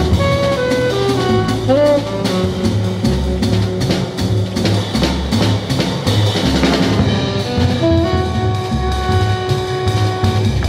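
Live jazz trio: a tenor saxophone plays a moving melodic line over a plucked double bass and a drum kit with cymbals. In the last couple of seconds the saxophone holds a longer note.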